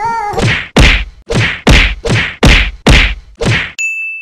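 A sound-effect sting of about eight loud, evenly spaced heavy hits, a little over two a second, ending in a high bell-like ding just before the end. The tail of a sung tune fades out at the start.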